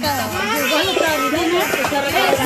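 Several people talking at once, with children's voices among the adults: lively party chatter.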